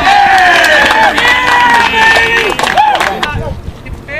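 Several voices shouting and cheering at once as a run scores in a baseball game, loud and overlapping with some long held yells, dying down a little over three seconds in.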